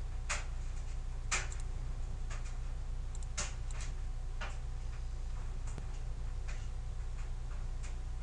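Regular ticking, about one sharp tick a second, over a steady low hum.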